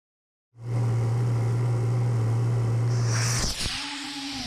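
Model rocket motor burning during a thrust-vector-controlled flight: a loud, steady roar that starts about half a second in and stops suddenly about three and a half seconds in, with a swish just before it stops.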